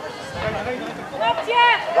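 Speech only: a man's voice talking, with no distinct other sound standing out.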